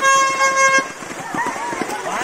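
A single steady horn-like tone, held for just under a second and then cut off, followed by voices talking.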